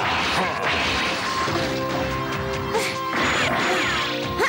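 Cartoon fight sound effects: several crashes of smashing rock and heavy blows, over background music with held notes.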